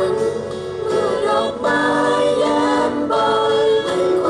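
A group of voices singing a song together in chorus, holding long notes, accompanied by acoustic guitar and violin.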